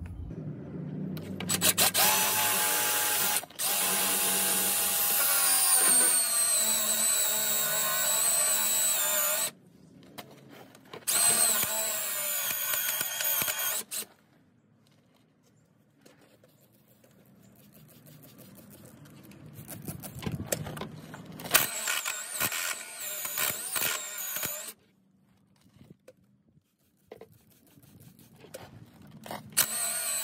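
Cordless DeWalt impact driver turning a spade bit, boring through the fiberglass bottom of a skiff's hull to drain suspected water under the floor. It runs in starts and stops: one long run with a slightly falling whine, a shorter run after a pause, then lighter rattly bursts, and a brief run again near the end.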